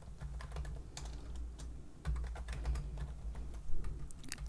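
Computer keyboard typing: an irregular run of quick, light key clicks over a low steady hum.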